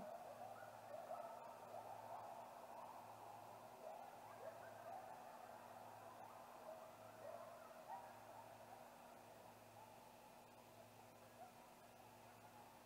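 Great gray owl giving a soft, low hoot right at the start, followed by faint scattered short chirping calls over a steady low hum.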